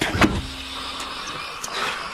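An old car driving, its engine and road noise running steadily, with a faint hum in the first half and a couple of light clicks.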